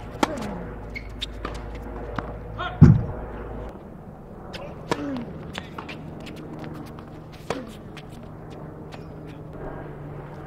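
Tennis rally: a ball struck back and forth by rackets, with sharp pops about two to three seconds apart. The loudest hit, about three seconds in, has a heavier thud. Lighter clicks of ball bounces and footwork fall between the shots.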